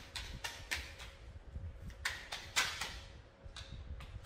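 Tarot cards being shuffled and drawn by hand: a string of short papery swishes, clustered about two to three seconds in.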